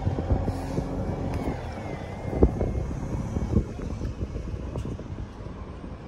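Steady low outdoor rumble, slowly fading, with two sharp knocks about two and a half and three and a half seconds in.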